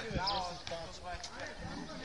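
Players calling out across an outdoor court, with a few short thuds of a football hitting the asphalt.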